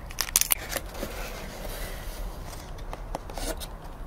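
Handling noise: light clicks and rustles as a paper plate and a paper-and-gummy-block house are moved and re-stacked by hand, a cluster of clicks about half a second in and a few more near the end, over a low steady background hum.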